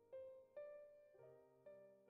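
Faint, calm solo piano music with slow, sustained notes, a new note struck about every half second.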